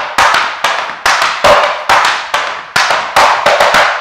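Metal taps of tap shoes striking and brushing a wooden tap board: a fast, even run of brushes, back-brushes and steps, about five sharp taps a second.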